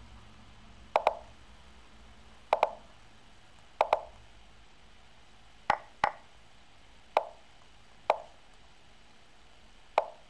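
Lichess chess-piece move sounds: short, sharp wooden clacks, one per move, about ten in all, several in quick pairs as the two sides reply to each other at blitz speed.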